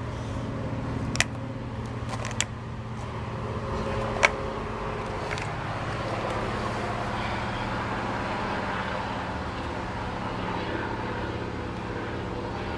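Steady low mechanical hum, with three sharp crunches in the first four seconds from a red-footed tortoise biting into dry tortoise pellets.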